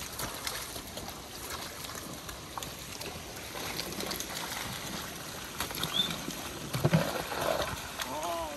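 Water trickling and splashing in a flooded rice paddy, with many small splashes. A person's voice is heard briefly near the end.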